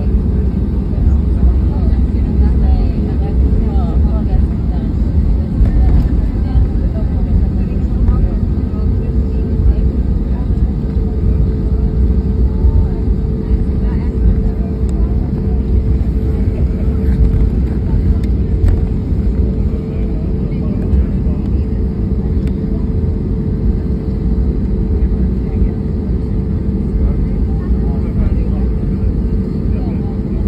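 Jet airliner cabin noise during taxiing after landing: the engine running at low power heard from a seat over the wing, a steady low rumble, with a steady hum coming in about eight seconds in.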